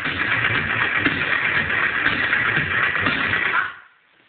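Electronic dance music played loud through a homemade ported subwoofer box run from car batteries, dropping away to near silence near the end.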